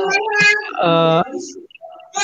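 A man's voice over a live video call, with one drawn-out vowel held at a steady pitch about a second in.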